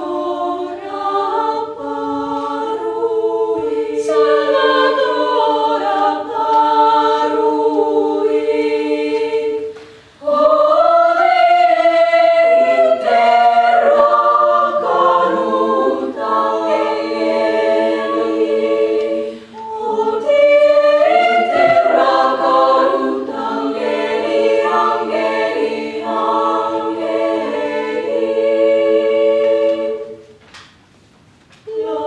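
Girls' choir singing a cappella in several parts, holding sustained chords. The singing breaks off briefly about ten seconds in and again just before twenty seconds, between phrases.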